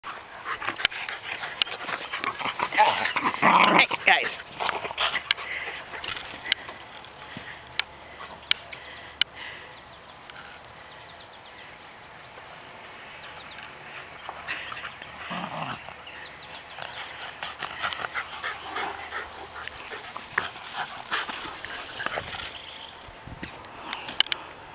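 Two wire fox terriers barking and yapping excitedly as they play fetch, loudest a few seconds in, with scattered sharp clicks and more barking in the second half.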